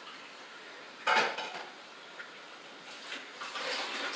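A hand raking through finely sifted vermicompost in a plastic tub: a short rustling scrape about a second in, then fainter rustling near the end.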